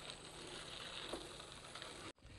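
Faint, steady noise of a bicycle rolling along a paved trail, a low rumble from the tyres and passing air with no distinct events.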